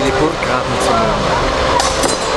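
Onlookers' voices talking over each other, with one sharp strike of a sword hitting a shield near the end.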